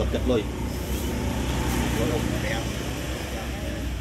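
A low, steady engine rumble from a motor vehicle running, with faint speech over it.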